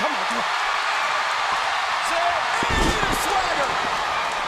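Arena crowd noise, with one heavy deep thump about three seconds in as a wrestler is dropped from a fireman's carry and slammed flat onto the wrestling ring's canvas.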